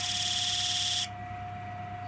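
Pencil point rubbing on an oak blank spinning on a Record Power wood lathe: a high scratching hiss that stops abruptly about a second in as the pencil is lifted. The lathe motor's steady hum continues underneath.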